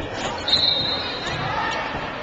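Basketball game sounds in a gymnasium: spectators' voices, a knock about half a second in, then a high squeak lasting under a second, and players moving on the hardwood court.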